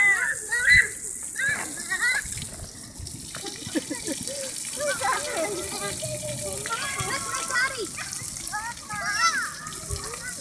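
Splash-pad ring fountain jets spraying steadily, under a mix of children's voices, calls and babbling.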